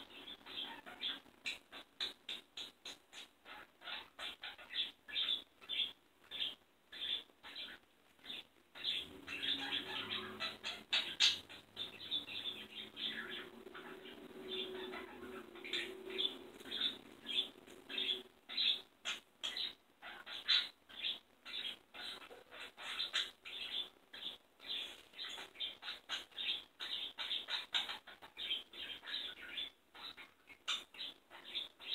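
Pet budgerigars chirping in rapid, short calls, a few every second. From about nine to eighteen seconds in, the chirps run together and a lower, steadier sound joins them.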